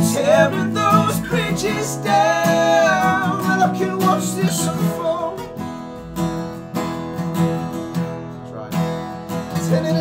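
Two acoustic guitars strummed together, with two men's voices singing over them for the first few seconds; the guitars then carry on alone until a voice comes back in near the end.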